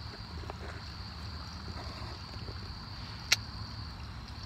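Low steady outdoor rumble with a single sharp crack about three seconds in, a pop from the wood campfire.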